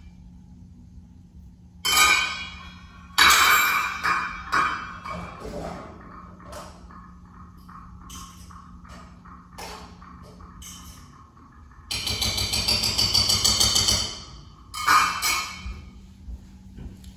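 Kitchen sounds from dinner being cooked: clattering and clinking of cookware and dishes, with sudden knocks about two and three seconds in and again near the end. A steady low hum stops about eleven seconds in. A rougher rushing noise lasts about two seconds shortly after.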